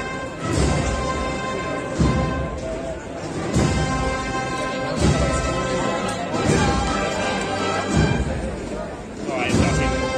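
Spanish procession band (agrupación musical) of brass, flutes and drums playing a slow march, with heavy drum beats about every second and a half under sustained melody notes.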